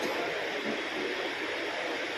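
Steady, even hiss of room noise picked up by an open microphone, with no distinct events.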